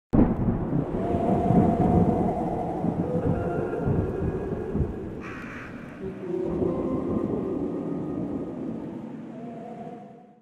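Deep rolling rumble of thunder that starts suddenly, with a short hiss about five seconds in and a second swell of rumble just after. Faint held tones sound over it, and it fades out at the end.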